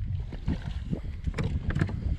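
Wind rumbling on the microphone, with a small splash of water as a traíra is let go over the side of the boat, and a few light knocks near the end.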